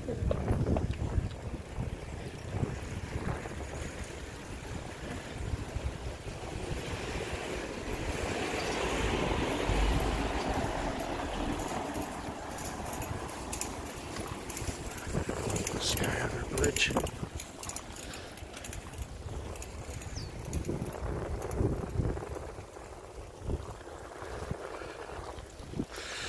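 Outdoor ambience while riding a bicycle: wind rumbling on the microphone and the bike rolling over the road, with a swell of noise in the middle and a few sharp clicks near the end, plus faint voices now and then.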